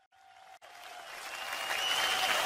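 Live concert crowd applause fading in from silence and growing steadily louder. There is a short click about half a second in.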